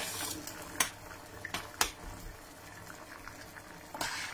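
Liquid bubbling at a low boil in pots on a stove. Two sharp clicks come about one and two seconds in.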